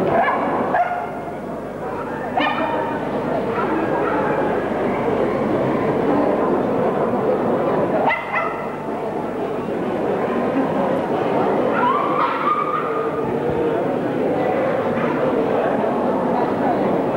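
Staffordshire Bull Terriers giving a few short barks and yelps, about four times, over a steady babble of crowd chatter.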